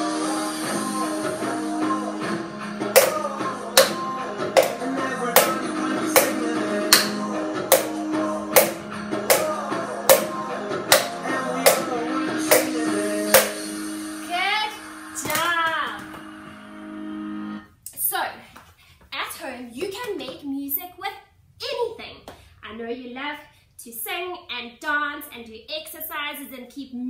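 Upbeat guitar music with a wooden spoon beating on a plastic bowl in time, sharp taps about two a second for roughly ten seconds; the music stops about two-thirds of the way in and a voice follows.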